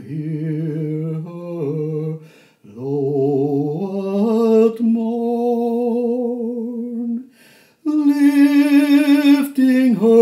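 A single voice singing a slow song, holding long notes with vibrato, in three phrases broken by short breaths about two and a half and seven and a half seconds in; the last phrase, near the end, is brighter and louder.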